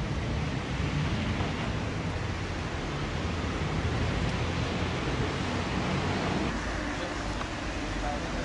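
Steady rushing noise of wind buffeting the microphone, with a fluctuating low rumble.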